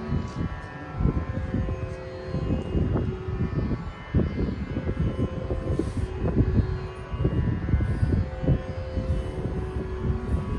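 Mridangam and ghatam playing a run of rapid, uneven strokes over a steady shruti drone.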